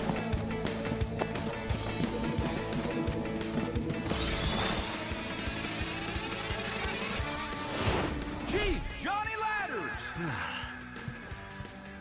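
Animated cartoon soundtrack: background music with rising swish effects, a loud rush of noise about four seconds in and a sharp crash-like hit near eight seconds.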